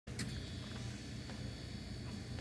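Faint steady background noise: a low hum with a thin high-pitched whine and a few light clicks.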